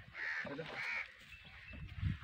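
A bird calling outdoors: two short calls in quick succession in the first second, then quiet.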